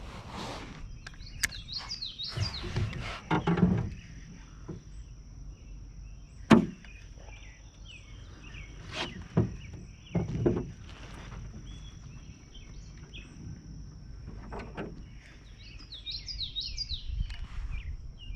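Songbirds chirping in short runs of falling notes, over a steady high insect drone. Scattered knocks and clicks come from a spinning rod and reel being handled in a canoe; the loudest is a sharp knock about six and a half seconds in.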